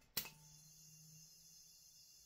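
A single sharp click just after the start, then near silence: faint room tone with a low steady hum.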